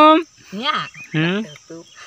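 A steady high-pitched insect shrill, with short, brief vocal sounds from a boy over it.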